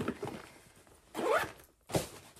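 A zip on a bag pulled closed in one quick rising stroke about a second in, followed by a short sharp click.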